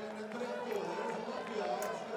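Indistinct, distant speech over a low murmur of outdoor crowd ambience.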